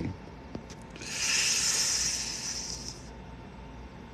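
A man's long breath, drawn or let out through the nose or teeth, lasting about two seconds from about a second in, while he is crying.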